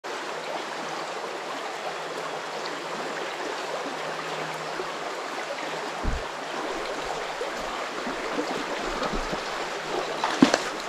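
Shallow, rocky creek water running steadily over stones. There is a brief low thump about six seconds in.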